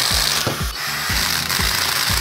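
Power driver running a bolt through a steel bracket into an aluminium extrusion rail, a steady whirring noise, over background music with a steady beat.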